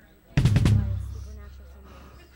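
Drum kit struck hard in a quick roll about a third of a second in, followed by a low note that rings on and slowly fades.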